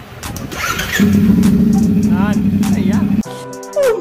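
CFMOTO 450SR's 450 cc parallel-twin engine running through an Akrapovic slip-on exhaust. It idles, is revved about a second in and held steady at high revs for about two seconds, then cuts off abruptly near the end.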